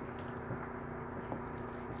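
A steady low hum of a few level tones, with a couple of faint light clicks as acrylic denture teeth are pressed onto a stone model.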